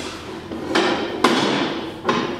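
Noises of a person getting up from a chair at a table: a noisy scuffle, then a single sharp knock a little past a second in.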